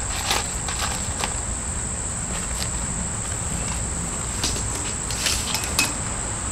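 Insects trilling in one steady high tone over a low outdoor rumble, with a few soft clicks and rustles, the loudest just before the end.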